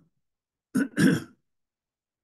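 A man clearing his throat: a short rasp under a second in, then a slightly longer one.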